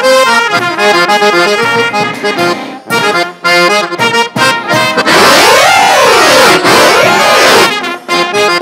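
Balkan brass band with accordion (trumpets, trombones, tuba, snare and bass drum) playing a fast tune live. About five seconds in, the horns swoop up and down in pitch twice over a loud cymbal wash, and the tune picks up again near the end.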